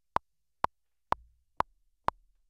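Metronome click track counting in: short electronic beeps, evenly spaced about two a second, four of them, setting the tempo before the play-along track comes in.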